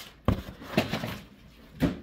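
Handling noise of shrink-wrapped vinyl LP records being lifted from a cardboard box: three short knocks with light rustling between them, the last near the end.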